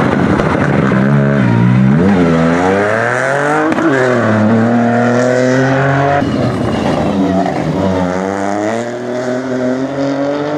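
Ford Fiesta rally car's engine revving hard as it accelerates away, its pitch climbing and then dropping with each upshift. The sound changes abruptly about six seconds in, and another run of climbing revs follows.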